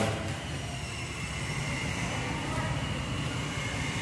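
Gas stove burner running under a pot of chicken soup: a steady hiss and rumble, with a faint, steady high tone.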